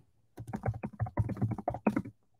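Typing on a computer keyboard: a quick run of about a dozen key presses starting about half a second in.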